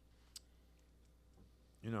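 A pause in a man's speech: faint room hum with one short, sharp click about a third of a second in, then his speech resumes near the end.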